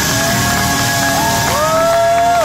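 Live blues band playing loud, with a long held note that rises in pitch about one and a half seconds in and holds, and a crowd cheering underneath.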